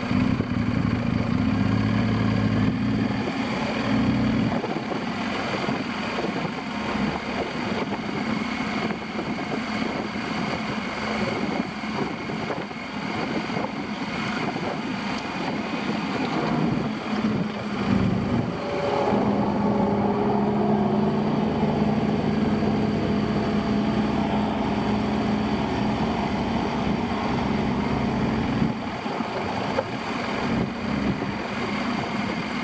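BMW R1250GS boxer-twin engine running at low speed while the heavily loaded motorcycle rolls over loose gravel, with tyre noise on the stones and wind on the helmet microphone. The engine note changes about four seconds in and again about two thirds of the way through.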